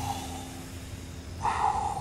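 Film sound effect of steam hissing out of the Spider-Man suit as its heater comes on. It plays over a low steady rumble, and the hiss swells briefly about one and a half seconds in.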